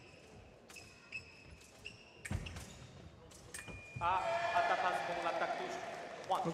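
Sabre bout action: footfalls and sharp clicks on the piste, then a steady electronic tone from the scoring apparatus about three and a half seconds in as a touch registers, followed by loud shouting for the last two seconds.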